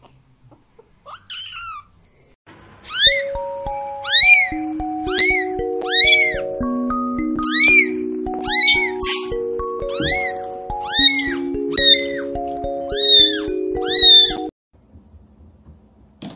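A short falling kitten meow about a second in. Then background music with held notes starts, and a kitten's high meows repeat over it in a steady rhythm, about one a second, a dozen or so in all. The music and meows cut off together a little before the end.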